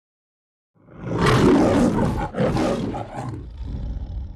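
A lion roaring: two long, loud roars starting about a second in, then a weaker trailing growl that dies away.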